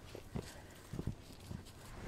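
Footsteps on a dirt trail covered in dry fallen leaves: a few faint, unevenly spaced steps.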